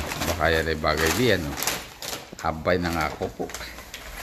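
A man's low, drawn-out vocal sounds, not words, in two stretches, the first rising in pitch at its end.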